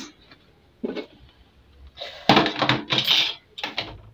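Aluminium pot lid clattering as it is lifted off a pot of just-boiled herbal brew and set down on the counter. There is a small knock about a second in, then a longer run of metallic clatter in the second half.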